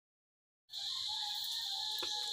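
Silence, then about two-thirds of a second in a steady, high-pitched drone of insects starts and holds, typical of crickets.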